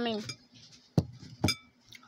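Metal spoon clinking twice against a ceramic bowl, about half a second apart, each strike ringing briefly.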